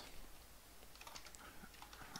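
Faint computer keyboard typing: scattered, irregular keystrokes.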